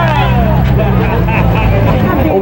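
A crowded bus's engine running with a steady low hum, with passengers' voices and laughter over it.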